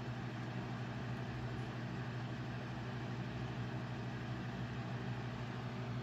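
A steady low hum of room background noise, unchanging throughout, with no other events.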